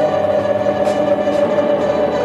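Live jazz band playing: held electric keyboard chords over bass and drums, with the horns not playing.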